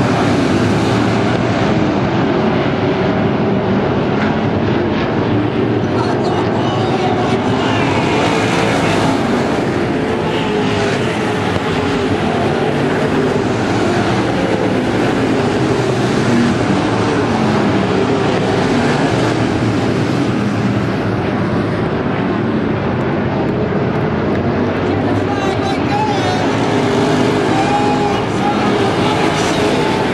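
A pack of IMCA dirt-track race cars with their engines running hard together, a continuous loud din. The pitch rises and falls as the cars get on and off the throttle around the oval.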